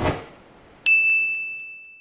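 Logo-sting sound effect: a whoosh fading out, then a little under a second in, a single bright ding that rings on steadily and fades away.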